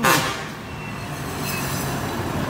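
Electric high-pressure car-washer pump running, a steady low hum with a hiss over it from the water jet.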